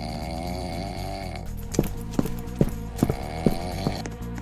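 Background music with a comic sound-effect track over it: a wavering, wobbling tone in the first second and a half and again near the end, and from about two seconds in a run of six evenly spaced knocks, like footsteps.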